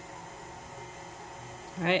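Steady low hum with a faint hiss, with no clicks or knocks; a woman's voice comes in near the end.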